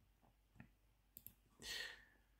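Faint clicks of the laptop's pointer button as Next is clicked in the Windows setup wizard: a single click about half a second in and a quick pair just after a second in. Near the end comes a short breath.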